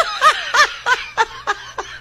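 A man laughing in a quick run of short 'ha' bursts, about three a second, growing weaker in the second half.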